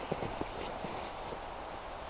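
Footsteps crunching in snow, a few soft steps in the first second, then a steady background hiss.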